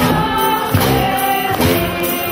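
A group of people singing together, with a tuba playing a low bass line beneath the voices.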